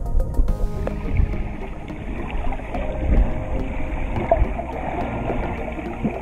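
Muffled underwater water noise picked up by a submerged action camera: a steady murky wash with occasional gurgles. A few held music notes fade out in the first second.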